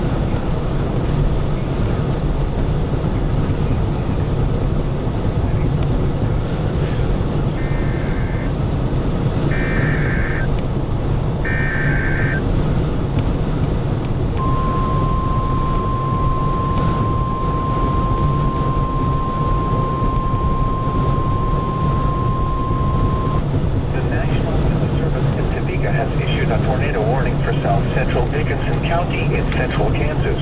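NOAA Weather Radio alert for a tornado warning: three short buzzy bursts of SAME data tones about two seconds apart, then the long steady warning alarm tone for about nine seconds, then the broadcast voice begins. A steady low rumble runs underneath.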